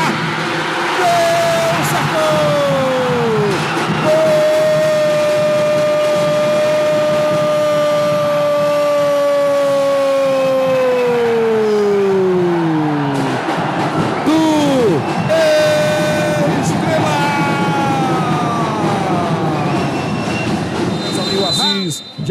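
A commentator's long drawn-out goal shout: one held note of about nine seconds that sinks in pitch at the end, with shorter shouted calls before and after it.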